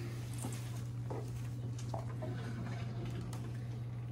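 Quiet room tone: a steady low hum with a few faint, light clicks scattered through it.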